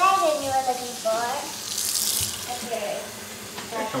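Kitchen faucet running, its stream pouring into a small cup held in the sink. High-pitched child voices are heard in the first second.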